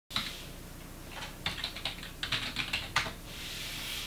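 Typing on a computer keyboard: a quick, irregular run of key clicks from about one to three seconds in, then a faint swelling hiss near the end.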